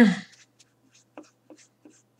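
A woman clearing her throat at the very start, followed by a handful of faint, short clicks and taps as small objects are handled close to the microphone.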